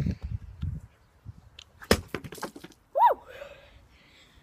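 A thrown stone striking plastic drink bottles on the ground: one sharp crack about two seconds in, with a brief clatter after it. About a second later comes a short yelp that rises and falls.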